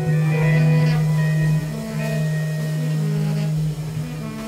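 Free-improvisation band playing live with electric guitar, saxophone and drums: a long held low drone note, broken briefly about one and a half seconds in and then held again, with higher sustained tones over it.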